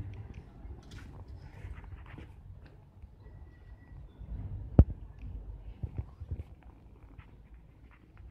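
Footsteps on a hard floor with handheld camera handling noise, irregular low thumps and faint clicks, and one sharp knock nearly five seconds in.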